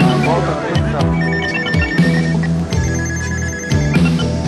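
Electronic telephone ringing twice, each ring a warbling trill about a second long, over background music with a steady bass line.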